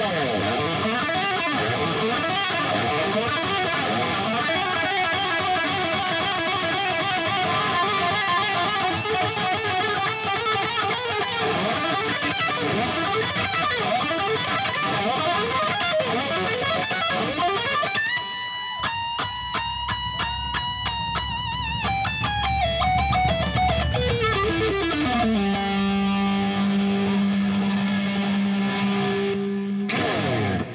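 Live rock band playing: distorted electric guitar over bass and drums, with fast guitar lines for most of the stretch. Near the end a held high guitar note slides down in pitch into a long sustained low note, closing out the song.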